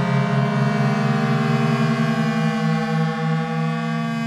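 Algorithmic electroacoustic music: a dense, steady drone of many held tones layered on one another, the strongest ones low and slowly pulsing, with a horn-like quality.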